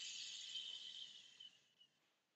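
A man's long, slow exhale, breathed out as an audible high hiss that fades away about a second and a half in.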